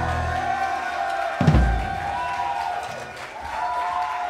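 A live jazz trio of piano, electric bass and drums closes a tune. A held low note fades out, one bass drum hit comes about one and a half seconds in, and soft wavering tones ring on after it.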